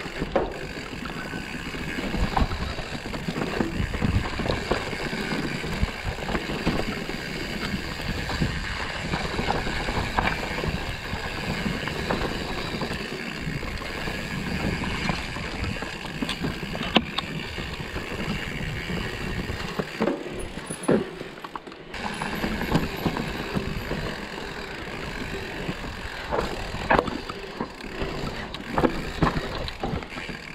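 Mountain bike ridden along a dirt woodland singletrack: steady rolling noise from the tyres on the dirt, with frequent short rattles and knocks from the bike over the bumps, briefly quieter about two-thirds of the way through.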